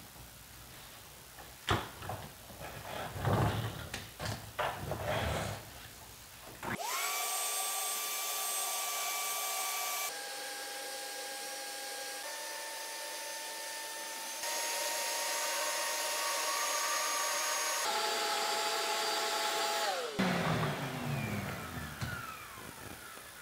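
Plastic knocks and clicks as a hose is fitted to a Ridgid shop vac with a Dustopper cyclone separator on a bucket. About seven seconds in the vacuum motor starts, its whine rising to speed, and runs steadily while it picks up sawdust from the floor, its pitch dropping for a few seconds in the middle and coming back up. It is switched off about two seconds before the end and winds down with a falling whine.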